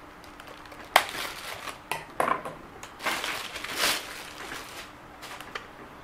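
Scissors cutting open a plastic bag and the plastic wrapping crinkling as a radio transmitter is pulled out of it: a sharp snip about a second in, another a second later, then a longer rustle of plastic.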